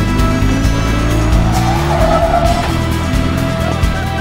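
Ford GT40 Mk II race car's V8 engine accelerating hard at full throttle, its pitch rising, under dramatic film score music.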